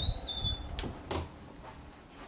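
Bedroom door being pushed open: a short, high hinge squeak that falls slightly in pitch, followed by a few soft knocks.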